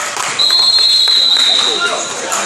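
A referee's whistle blown in one long, steady, high blast that starts about half a second in and lasts about a second and a half, over voices and court noise in a gym.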